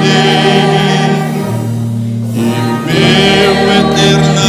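Choir and string orchestra performing a gospel hymn: sustained sung chords with vibrato over strings and a held bass note. The upper voices drop away briefly about a second in and return just past halfway.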